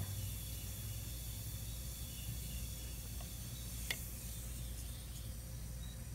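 Diluted muriatic acid fizzing against a seashell held in it with tongs: a steady soft hiss as the acid dissolves the shell's calcium carbonate and gives off gas bubbles. A single sharp click about four seconds in.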